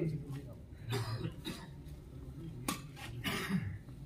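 Scattered voices and a cough from people courtside, with a few short clicks; the sharpest comes about two-thirds of the way through.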